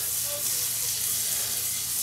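Butter sizzling steadily in a hot frying pan as the pan is swirled to spread it.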